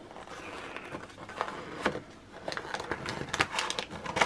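Cardboard handling: a child's fingers working at a paper advent-calendar door and the small box behind it, a scatter of light taps, scrapes and rustles that cluster together near the end.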